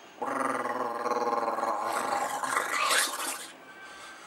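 A long, rough growl, lasting about three seconds and fading out near the end.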